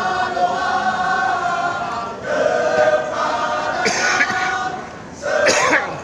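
A male choir singing in unison with long held notes, broken by two loud shouts, about four seconds in and again near the end.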